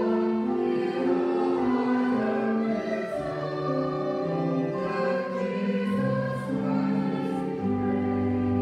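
A choir singing slow, sustained music in several parts, holding each chord for about a second before moving on.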